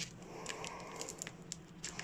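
Plastic packaging around a hard-drive circuit board crinkling faintly as it is handled, with a few small scattered crackles.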